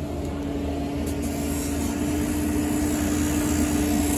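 E55 mini excavator running steadily at work, its diesel engine and hydraulics giving a constant low rumble with a steady hum on top, while it swings a bucket of backfill dirt over the trench.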